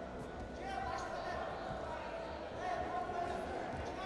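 Voices calling out in a large sports hall, two drawn-out calls about a second in and near the end, with a few dull thuds over the steady hall noise.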